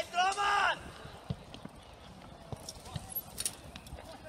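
Loud shouts from voices on the sidelines during the first second. After that only low background sound from the pitch, with a few scattered faint thumps.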